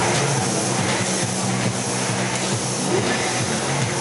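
Steady exhibition-hall din: a continuous wash of machinery and crowd noise with music playing in the background.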